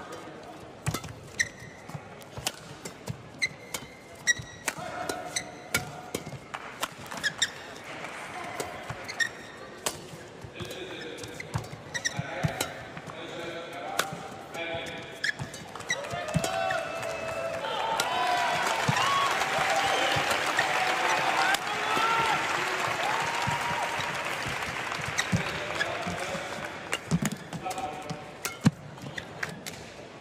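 Badminton rally in an indoor arena: sharp racket strikes on the shuttlecock at irregular intervals, with light shoe noise on the court. About halfway through, the crowd grows loud with cheering and shouting for several seconds, then dies down as the strikes carry on.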